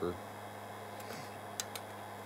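A low steady hum with a few faint ticks about a second in and again around a second and a half.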